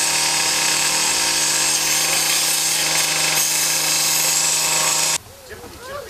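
Angle grinder cutting through the sheet-metal body of a crashed car, a loud steady whine that cuts off suddenly about five seconds in.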